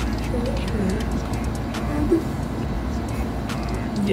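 A steady low background rumble with faint murmured voice sounds over it.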